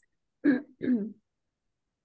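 A person clearing their throat in two short pitched bursts, about half a second apart.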